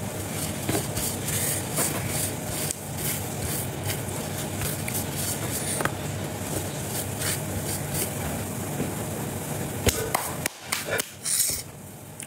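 Scattered light knocks and clicks of eating by hand from a plate, over a steady hiss that drops away about ten and a half seconds in.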